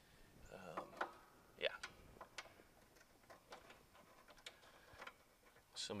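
Faint, irregular clicks and ticks from a plastic liquidtight conduit connector and its locknut being handled and fitted into a knockout in the bottom of a metal electrical panel.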